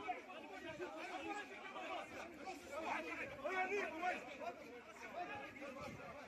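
A crowd of men talking at once, many overlapping voices with no single speaker standing out.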